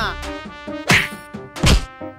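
Two sharp whack sound effects, about a second in and again near the end, like dubbed punches in a fight scene, over steady background music.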